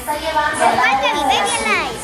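Children's voices: high-pitched chatter and calls of children at play, overlapping, with no clear words.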